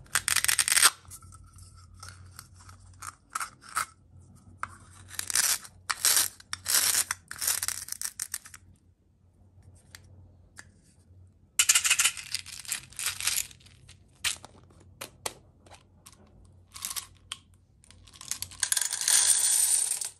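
Hands working a hollow plastic toy apple, with sharp plastic clicks and bursts of small plastic beads rattling. Near the end, a steady clatter of beads being poured into a metal muffin tin.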